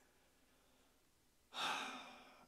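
Near silence, then about one and a half seconds in a man takes one audible breath, a breathy sigh that fades over about a second.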